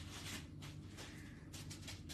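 Fine-liner pen drawing short strokes on a paper tile: a soft scratching, repeated several times a second, over a low steady hum.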